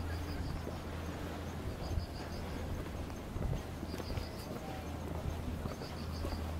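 Footsteps walking on a paved street, with scattered soft knocks over a steady low outdoor rumble. Short runs of faint high chirps come a few times.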